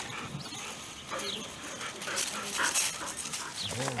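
Australian shepherd dogs making short, soft vocal sounds as they play close by, among scattered brief rustles and scuffs.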